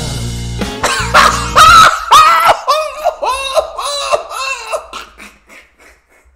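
A man laughing hard over a country song. The song cuts off about two seconds in, and the laughter goes on as a string of loud, short ha's that trail away near the end.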